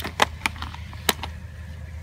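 A carbon road bike setting off across grass: a few sharp, separate clicks from the bike over a steady low rumble.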